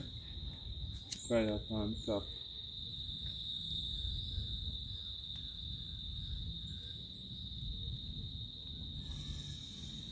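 Crickets trilling steadily in one high, unbroken tone.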